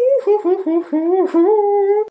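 A woman humming a little tune: a held note, then a run of short notes that each dip and rise, ending on another held note.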